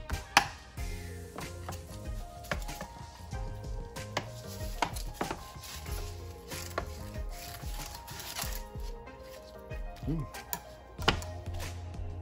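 Fillet knife cutting whiting on a plastic cutting board: irregular sharp clicks, knocks and scrapes of the blade on the board and through the fish bones. The loudest knock is about half a second in.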